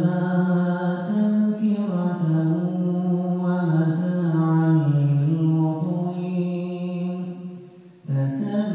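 A man reciting the Quran in melodic tajwid style, amplified through a microphone. He holds one long phrase whose pitch steps up and down, then it fades out near the end.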